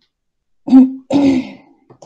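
A person clearing their throat about a second in, in two quick parts, the second rougher and breathier than the first.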